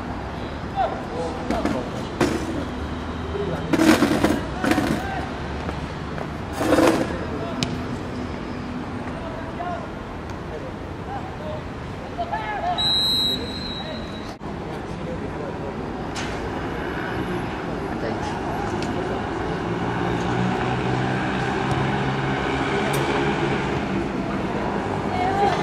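Football players' shouts and calls across the pitch, with a few loud calls in the first third, a single short high whistle blast about halfway through, and a growing babble of voices toward the end.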